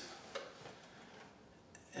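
Near-silent pause between spoken sentences: faint room tone with one small click about a third of a second in.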